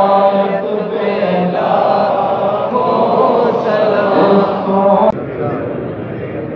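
A man's voice chanting in long, held, wavering notes, cutting off suddenly about five seconds in, leaving a lower murmur of voices.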